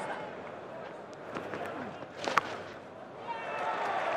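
Cricket ground crowd murmuring, with one sharp crack of a bat hitting the ball a little past two seconds in. Near the end the crowd noise swells as the ball runs away into the outfield.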